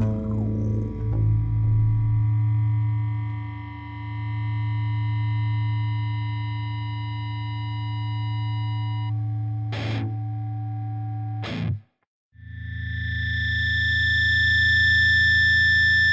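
Distorted electric guitar music with long sustained, ringing notes; it cuts out for a moment about three-quarters through, then another held chord rings on.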